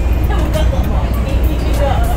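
Steady low rumble of a safari bus's engine and running gear, heard from inside the passenger cabin, with faint voices over it.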